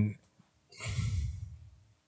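A man's sigh: one long breathy exhale into a close microphone, lasting about a second and fading out.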